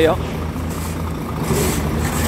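The diesel engine of an Iveco Trakker tipper truck idling with a steady low rumble.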